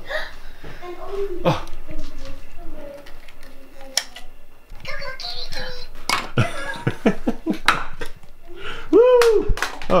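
A toddler's voice, babbling and exclaiming, with a loud rising-and-falling 'oh' near the end. Between the exclamations come sharp clicks and knocks of small plastic toys being handled.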